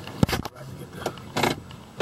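A few short clicks and clunks from a 2012 Chevrolet Impala's interior controls, consistent with the gear selector being moved through its positions. The loudest is a sharp click about a quarter second in, with another brief clunk past the middle.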